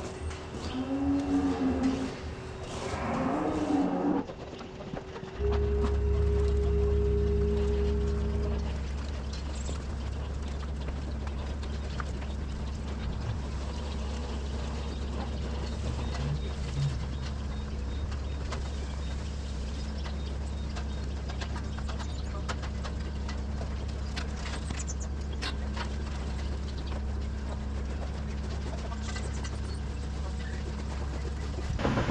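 Holstein dairy cows mooing, two calls in the first few seconds. From about five seconds in, a steady low mechanical hum starts suddenly and carries on.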